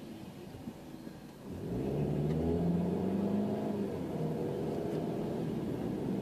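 A car's engine idling quietly, then pulling away from a standstill about a second and a half in. It grows clearly louder as the car accelerates, then runs on steadily.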